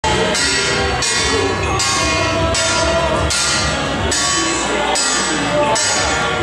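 Traditional temple procession music: brass hand cymbals clashing about once a second over drum beats, with a sliding melody line running throughout.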